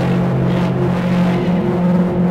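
Violin-family string instrument playing long, sustained low notes in a steady drone. The lowest note drops out about a second and a half in while a higher note holds on.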